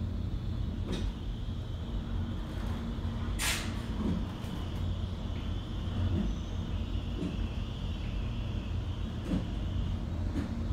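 Inside a 2016 Richmond traction elevator car travelling upward at speed: a steady low rumble of the ride with a faint high hum. A few light clicks and one short hiss about three and a half seconds in.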